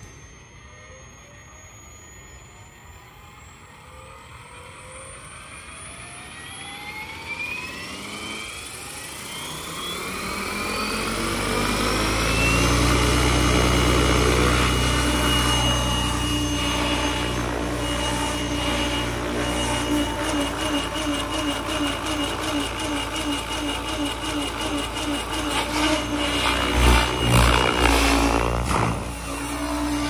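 ALIGN TB70 electric RC helicopter spooling up: its motor and gear whine rise steadily in pitch for about the first dozen seconds, then hold steady at the governed 1800 rpm headspeed. Heavy rotor-blade noise comes in with it, and there are a few louder bursts near the end.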